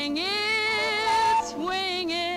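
Swing-era song number: a woman's singing voice, holding a wavering note, together with a small handheld wind instrument.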